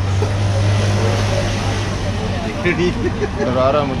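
A steady low hum runs through the first two and a half seconds. Voices talk over it in the second half.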